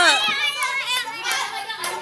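Children's voices calling out and chattering together during a group game, high-pitched and overlapping.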